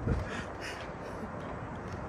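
Faint bird calls, crow-like caws, over a low, steady background hush.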